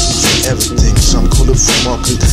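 Hip-hop track: a beat with heavy bass, with short rapped or chanted vocal phrases over it.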